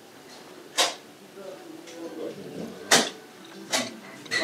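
A man eating a piece of beef: chewing, with three short, sharp noises, about a second in, near three seconds and just before the end.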